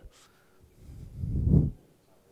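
A low, muffled human vocal sound, like a hum or a heavy breath close to the microphone, swelling for about a second and fading out.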